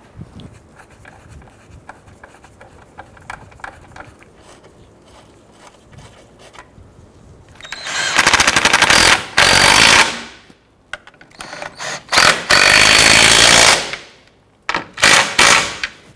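Faint clicks and handling as the engine-mount nuts are started by hand, then a power tool with a deep socket runs the two lower nuts down in three runs: about 2.5 seconds long, then about 3.5 seconds, then a short burst near the end.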